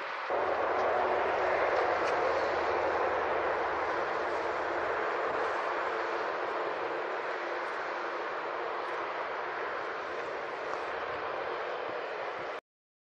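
Jet engines of an Air India Airbus A320-family airliner during its landing rollout on the runway: a steady rushing noise that steps up in level about a third of a second in, then slowly fades as the aircraft slows.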